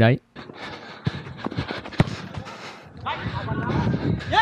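Live on-pitch sound of a small-sided football match on artificial turf: the scuff of running feet and several sharp knocks of a football being played, the sharpest about two seconds in. Players' voices call out near the end.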